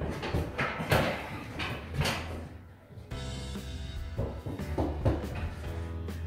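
Music playing throughout, with a few short knocks and scuffs in the first two seconds as a length of plaster cornice is pressed and handled against the ceiling line.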